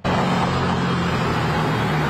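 Steady street traffic noise with a low engine hum, cutting in suddenly out of dead silence.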